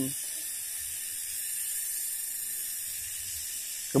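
Steady rushing hiss of water flowing fast along an irrigation channel.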